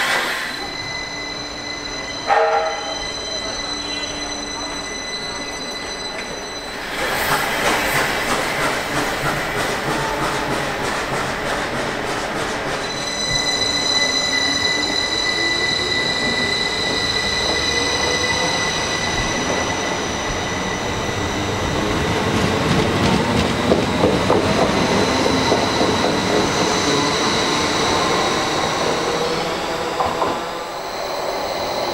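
A passenger train running along the platform, with a continuous steady high whine and squealing wheels and the clatter of wheels on the rails. There is a sharp knock about two seconds in. Midway a lower tone rises slowly, as of the train picking up speed.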